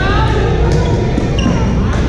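Busy badminton hall: a few sharp racket hits on shuttlecocks, with short sneaker squeaks on the court floor near the start and again about halfway through, over a steady hall rumble and background voices.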